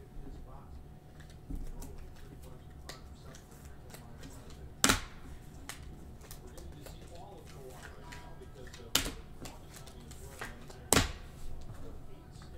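Trading cards and hard plastic card holders being handled on a table: scattered light clicks, with three sharp clacks, one near the middle and two near the end, over a steady low hum.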